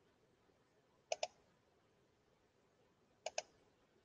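Computer mouse clicks: two quick double clicks about two seconds apart, with a quiet room between them.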